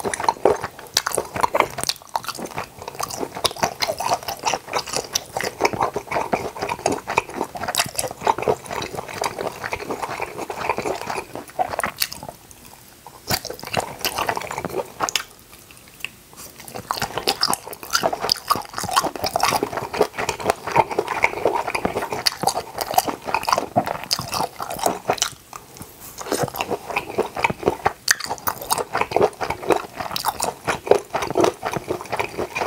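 Close-miked chewing and biting of grilled octopus skewers, a dense run of wet clicks and squelches, broken by short pauses a few times.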